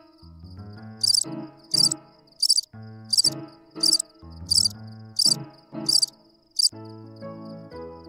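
Crickets chirping, nine short high chirps about one and a half a second over a thin steady high trill; the chirps stop near the end while the trill lingers. Soft keyboard music plays underneath.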